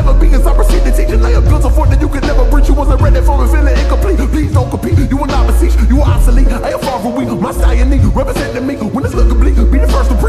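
Slowed-down, reverb-heavy hip hop track: a rapped verse over a beat with deep bass that drops out briefly a few times.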